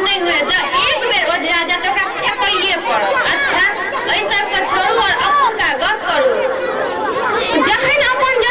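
Overlapping voices: several people talking at once.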